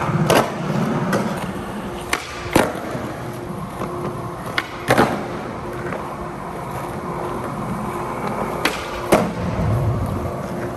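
Skateboard wheels rolling on a polished stone floor, with about seven sharp clacks of tail pops and landings. The clacks come mostly in pairs: near the start, about two seconds in, about five seconds in, and near the end.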